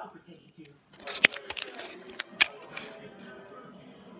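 Handling noise of a tablet being picked up off a tile floor: several sharp knocks and clicks with rustling, the loudest about a second in.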